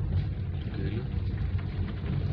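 Steady low rumble of a vehicle's engine and road noise, heard from inside the cabin while driving.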